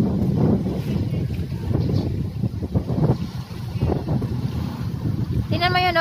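Wind buffeting the microphone over a low, steady rush of water as a high-speed passenger ferry speeds past offshore. A voice breaks in near the end.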